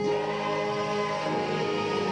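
Gospel choir singing, with a man's amplified lead voice over the women's voices, holding long notes.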